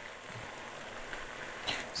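Spaghetti and tomato sauce sizzling steadily in a frying pan on a gas burner, the pasta finishing its last minute in the sauce as the cooking water cooks off.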